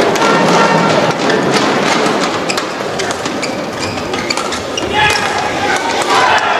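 Badminton rally: sharp cracks of rackets striking the shuttlecock, several in a row, with shoes squeaking on the court mat, over steady crowd noise in the arena.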